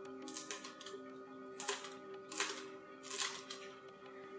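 Kitchen scissors snipping a green chili pepper into pieces: a series of short, crisp snips about every second, over soft background music.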